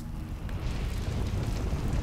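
A wildfire burning: a steady low rumble with a rushing hiss that comes up about half a second in.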